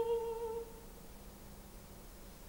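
Operatic soprano voice holding a sung note with vibrato that dies away about half a second in, followed by a quiet pause.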